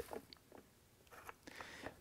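Near silence, with a few faint, short clicks of handling.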